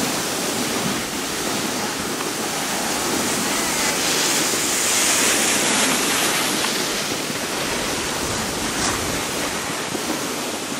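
Steady rushing noise of skiing: wind on the microphone and skis sliding over snow as the camera moves down the slope, swelling slightly in the middle.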